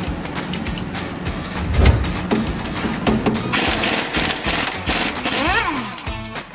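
Aerosol can of WD-40 spraying onto brake caliper bolts: one continuous hiss of about two seconds starting around the middle, over background music.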